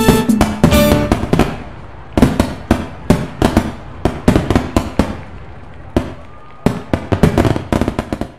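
Fireworks going off in an uneven run of sharp bangs and crackles. Music plays underneath at first and stops about a second and a half in.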